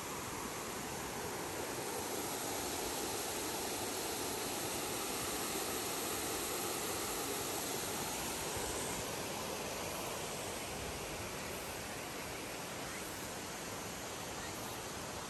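Steady rush of water spilling over a dam's spillway, a little louder for several seconds in the middle.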